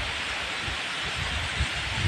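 Steady hiss of rough surf breaking on a pebble beach, with wind gusting and rumbling unevenly on the phone's microphone.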